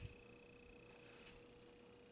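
Quiet room tone with a faint steady whine and one brief soft click a little over a second in.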